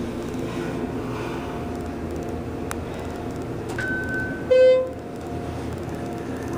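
Schindler hydraulic elevator car riding upward with a steady hum from the hydraulic drive. About four and a half seconds in, a short electronic chime, the loudest sound, marks the car passing a floor.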